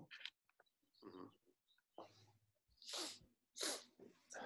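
Faint breath noises on a call microphone: several short puffs of breath, the two loudest near the end.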